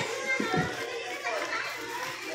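Indistinct chatter of several voices, including children's, with a couple of soft bumps about half a second in.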